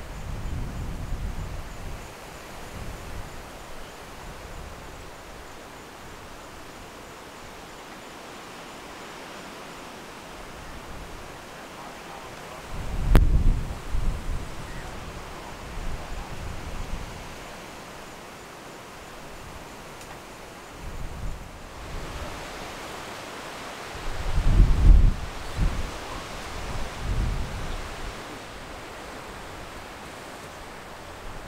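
Wind buffeting the microphone in low rumbling gusts, strongest near the start, about 13 seconds in and about 25 seconds in, over a steady outdoor hiss. A single sharp click comes about 13 seconds in.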